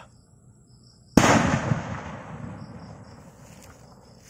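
A kwitis (Filipino skyrocket) bursts in the air with a single loud bang about a second in, and its echo fades away over the next two seconds.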